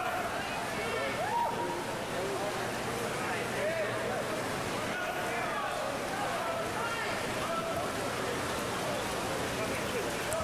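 Crowd of spectators and teammates shouting and cheering over the steady splashing of freestyle swimmers in an indoor pool.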